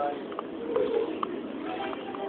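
Busy airport terminal concourse: footsteps clicking on the hard floor, echoing in the hall, over a murmur of distant voices, with a short low hoot-like sound a little under a second in.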